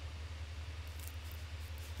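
Faint steady low hum with light background hiss: room tone.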